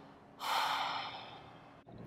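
A single heavy breath out through the nose and mouth, about half a second in and lasting under a second, as the yoga instructor exhales in downward facing dog.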